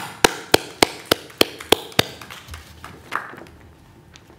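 One person clapping close to a microphone: about eight sharp, evenly spaced claps at roughly three and a half a second, stopping about two seconds in. A single softer knock follows about a second later.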